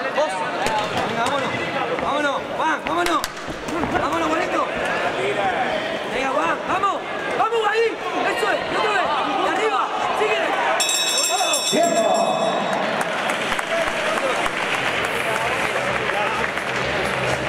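Spectators shouting and calling out, many voices overlapping. About eleven seconds in, a boxing ring bell rings for about two seconds, marking the end of the round.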